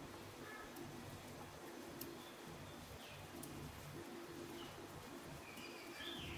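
Faint background birds: low repeated calls and a few short gliding chirps. A few faint light clicks come from the metal knitting needles as a row is purled.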